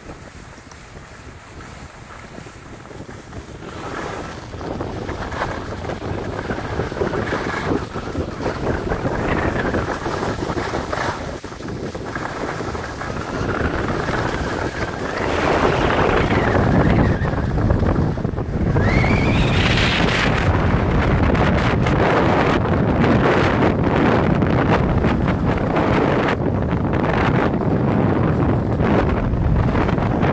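Wind rushing over the microphone of a skier's camera, growing steadily louder over the first fifteen seconds or so as speed builds and then staying loud, mixed with the hiss and scrape of skis on packed snow.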